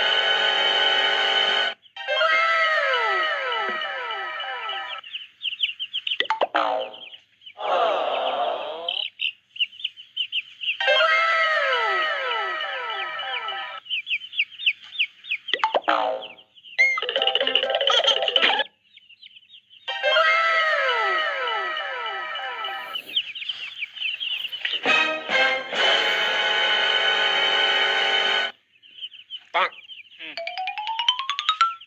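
Playful background music with cartoon-style sound effects, looping about every nine seconds. Each loop holds a run of falling pitch glides, and a rising glide comes near the end.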